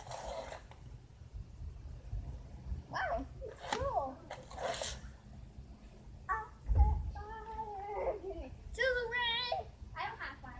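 Children's high-pitched voices calling and squealing without clear words, in several short outbursts. Brief bursts of hiss come between them.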